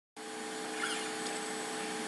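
Steady low hiss with a faint steady hum, cutting in abruptly at the very start: room tone picked up by the microphone.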